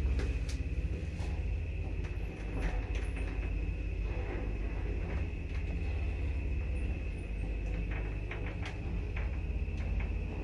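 1977 ZREMB passenger elevator car travelling upward in its shaft: a steady low rumble with a thin, steady high whine and scattered light clicks, more of them near the end.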